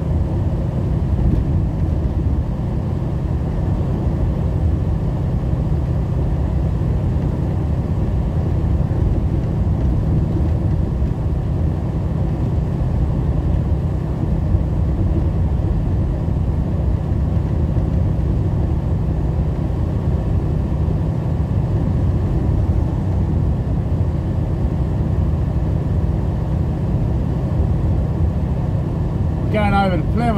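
Steady drone of a semi truck's diesel engine and tyres on a wet road at highway cruising speed, heard inside the cab, with an even low hum throughout. A man starts talking right at the end.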